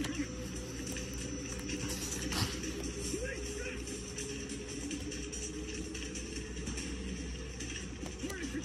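Indistinct background speech and music, with a single sharp paper sound about two and a half seconds in as a comic-book page is turned.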